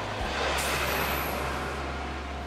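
Road traffic sound effect with buses: a steady rushing noise over a low hum that eases off slightly.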